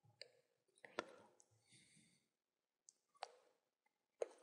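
Two faint computer-mouse clicks, about a second in and again near the end, as keys are pressed on an on-screen calculator emulator.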